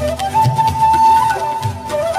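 Live ghazal concert music, instrumental: a single melody line holding long notes and sliding between them, over a steady low hand-drum rhythm.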